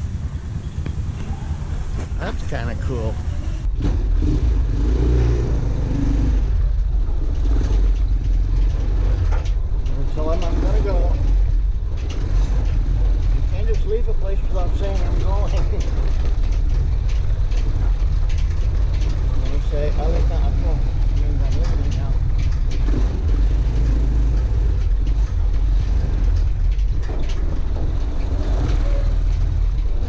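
Motor tricycle's engine running with a steady low rumble that grows louder about four seconds in. Faint voices come and go over it.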